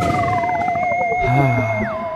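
Short intro jingle of electronic tones: a wavering tone holds steady while another glides steadily downward, and a high tone drops sharply in pitch near the end.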